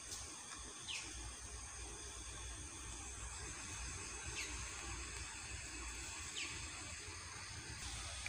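Faint night-time outdoor ambience: a steady high-pitched drone of night insects, with three short falling chirps scattered through it.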